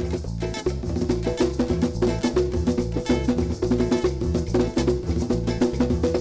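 Live Garifuna band music: acoustic guitar, electric bass, a hand drum and maracas playing together in a steady, driving rhythm.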